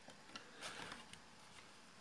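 Near silence with a few faint clicks and a soft rustle a little past halfway, as a blower fan's wiring and connector are handled and plugged back in.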